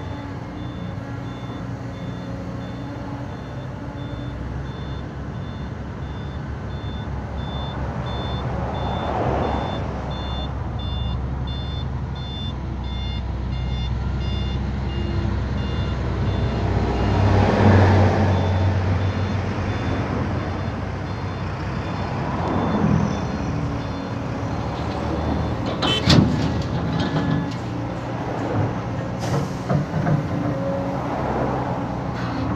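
Caterpillar hydraulic excavator digging and lifting a bucket of soil, its diesel engine running steadily and rising under load a little past halfway. A truck's reversing beeper sounds repeatedly through the first half, and a few sharp knocks come near the end.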